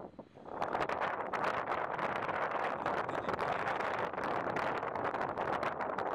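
Wind blowing over an exposed hilltop and across the microphone: a steady noisy rush with crackling buffets. It sets in about half a second in.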